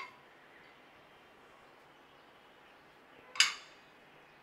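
A single sharp glass clink about three and a half seconds in, ringing briefly: a glass bowl set down on a stack of glass bowls. Otherwise quiet room tone.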